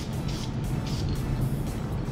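Aerosol can of spray-on insulating varnish spraying in a steady hiss as a starter armature's windings are coated, with background music underneath.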